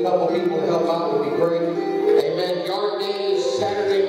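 Church worship music with a man's voice over it: held instrumental tones underneath and a pitched voice rising and falling above.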